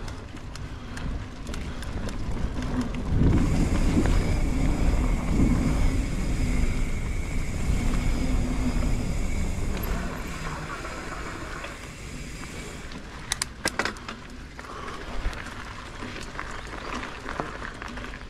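Mountain bike riding down a dirt forest trail: tyre roll and wind rumble on the camera. The noise grows louder through the middle, with a high steady whir. A few sharp clicks come later on.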